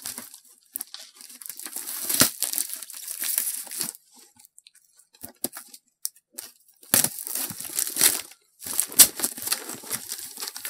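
A cardboard shipping box being torn open by hand, with crinkling of its packing, in irregular bouts of tearing and rustling. A quieter stretch in the middle holds only a few small clicks before the tearing and crinkling start again.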